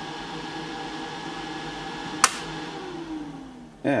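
24-volt computer fan venting the battery box, running with a steady hum. About two seconds in there is one sharp click as the voltage-sensing controller switches off with the battery voltage falling, and the fan's pitch then falls as it spins down.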